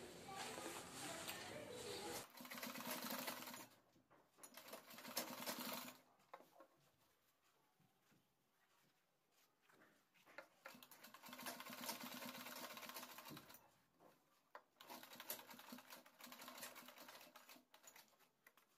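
Domestic sewing machine stitching in four short runs of rapid, even needle strokes, with pauses between them: short seams tacking the strap ends into the bag's corners.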